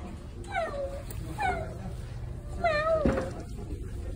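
An animal crying out three times in short wails that fall in pitch, the third longer and wavering.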